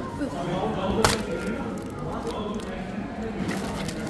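Background murmur of voices with a single sharp click or knock about a second in, then a paper bag rustling and crackling near the end.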